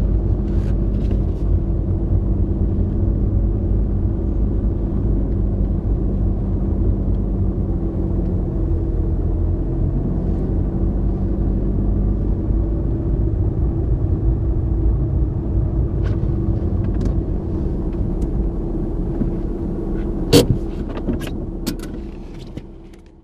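Fiat Punto running on methane, heard from inside the cabin while driving on a snowy road: the engine runs steadily under a low road and tyre rumble. Near the end comes a cluster of sharp knocks, one loud one a little after twenty seconds in.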